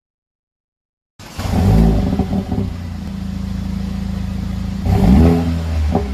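Mercedes-AMG CLA45's turbocharged four-cylinder engine, heard through its exhaust fitted with a sport resonator and a straight-piped rear section. It comes in about a second in with a surge, settles into a steady idle, then is revved once quickly near the end.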